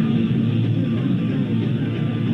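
Punk rock band playing live, guitar to the fore, loud and unbroken, on a muffled recording that carries almost nothing above the midrange.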